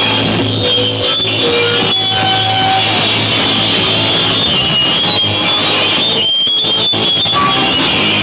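Rock band playing loud live: electric guitar over a drum kit, with some long held notes.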